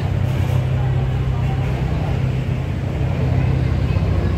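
Car engine idling steadily, a low even drone, with crowd chatter around it.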